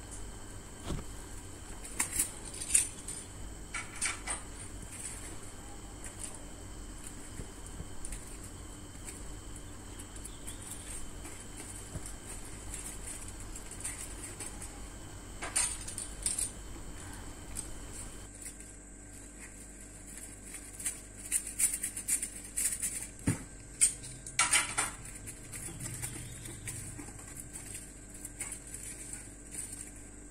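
A metal knife clicking and scraping against aluminium foil, with crinkling foil, as a dried sheet of mango papad is worked loose and peeled off it. The clicks come in scattered bursts, busiest about two thirds of the way through, over a faint steady hum.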